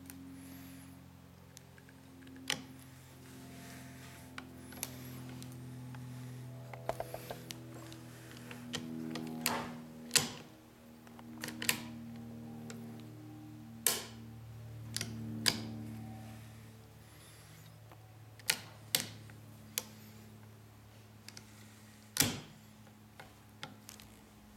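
Music with slow, sustained low notes runs under a series of sharp metallic clicks, about ten at irregular intervals, from the trigger and action parts of a Savage .223 bolt-action rifle being handled.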